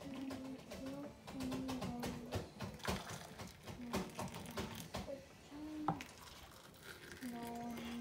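Hot water poured from an aluminium pot into small glass tea cups, with a few light clinks of glass. Quiet held musical tones run behind it.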